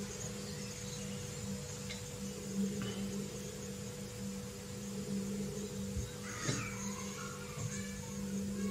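Quiet room tone with a steady low electrical hum. A couple of faint knocks come about six seconds in, as a handheld water tester is handled in a drinking glass.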